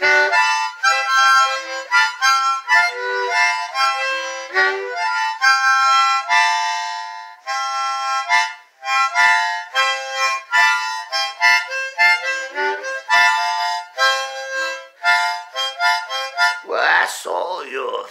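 Harmonica played solo, a melody in chords and single notes with breathy attacks, stopping about a second and a half before the end, where a man's voice comes in.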